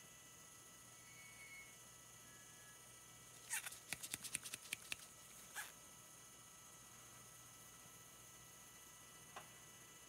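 Light, rapid tapping of a small plastic cup to shake glitter out onto a turning tumbler: a quick run of about a dozen soft clicks a little after three seconds in, then single taps near the middle and the end, over faint room hiss.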